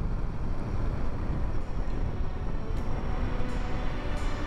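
Royal Enfield Himalayan 450's single-cylinder engine running steadily while riding at road speed, with road noise.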